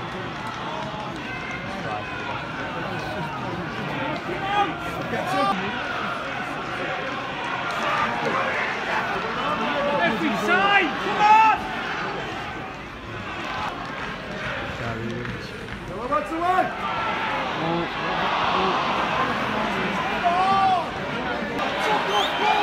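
Football crowd: many voices shouting and calling at once over a steady background of chatter, with louder shouts about eleven seconds in and again around sixteen seconds.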